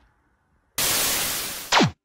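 TV-static sound effect: a loud burst of hiss lasting about a second, ending in a quick falling electronic sweep that cuts off, like an old CRT television switching off.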